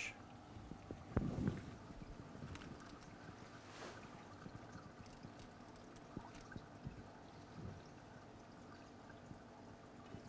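Faint water sounds and handling of plastic fish bags clipped to an aquarium rim, as tank water is added to the bags to acclimate new fish. A few small clicks, and a soft bump about a second in.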